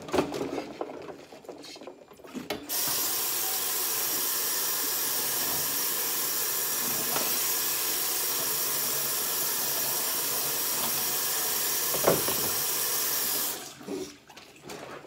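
Kitchen faucet running into a stainless steel sink full of soapy water, turned on about three seconds in and off just before the end, with a single knock near the end. Before the tap opens, a plate is handled in the suds with small clicks and splashes.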